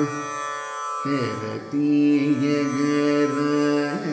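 Male Carnatic vocalist singing in raga Gaulipantu over a steady, self-plucked tanpura drone. The voice enters about a second in on one long note, ornamented with wavering slides in pitch.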